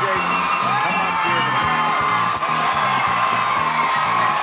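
Upbeat game-show band music with a bouncing bass line, under a studio audience cheering, whooping and yelling.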